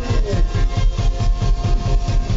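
Live band music: a fast, even rhythm of quick strokes over a pulsing bass, with a few held notes on top, as electric guitar and flute play.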